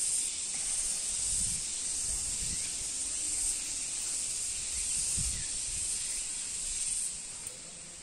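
A steady, high-pitched chorus of insects such as crickets, swelling gently about once a second, with a few soft low thuds of footsteps underneath.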